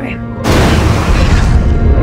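A cinematic trailer boom: a sudden deep hit about half a second in, followed by a loud rumbling wash that slowly fades, over sustained orchestral music.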